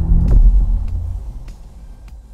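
Deep, loud bass boom of an editing sound effect for the title card, its rumble fading away over about a second and a half.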